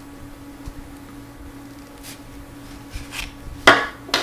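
Small clicks from handling a homemade paper ballistics knife's binder-clip trigger and twisted paper-clip latch, with one sharp click a little before the end, under a steady low hum.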